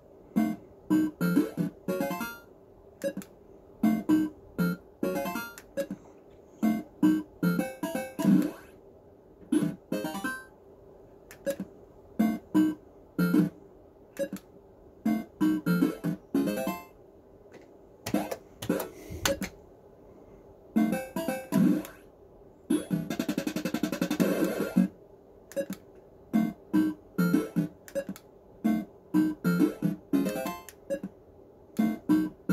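Action Note fruit machine playing its electronic bleeps and jingles in quick runs of short notes as the reels spin and stop, over a steady hum. A longer, denser noisy burst comes about two-thirds of the way through.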